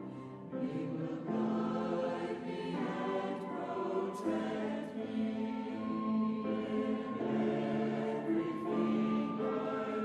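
A choir singing slow music, with held chords that change every second or so.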